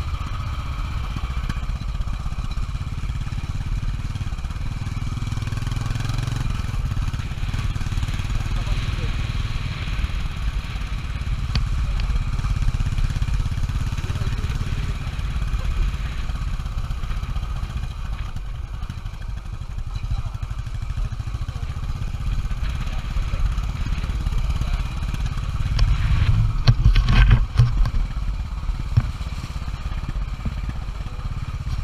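Royal Enfield Bullet Electra 350 single-cylinder engine running at low speed on a rough dirt track, with a steady low thump. Near the end come a louder stretch of knocks and rattles.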